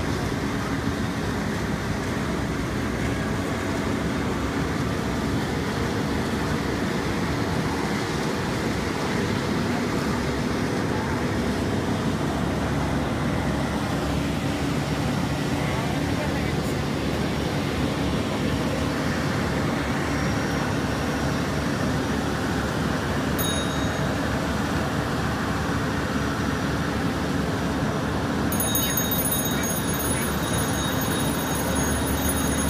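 Steady drone of a fire engine's diesel running at the scene of a building fire, mixed with the hiss of hose streams and indistinct voices.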